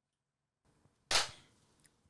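A single sharp hand clap about a second in, on cue after a spoken countdown, with a short ringing tail.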